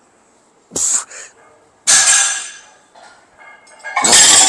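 Forceful hissing exhalations, three in quick succession in the first half, from a weightlifter breathing out hard through reps of a one-arm barbell row.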